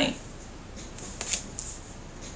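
Tarot cards being handled and a card set down on a wooden tabletop: a few faint, soft rustles and light taps about a second in.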